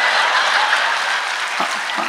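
Audience applauding, the clapping easing off gradually.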